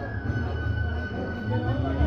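Several voices talking over each other, with a steady high-pitched tone held throughout and a low rumble underneath.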